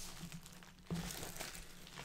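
Faint crinkling and rustling of packaging as items from the gift box are handled and set aside.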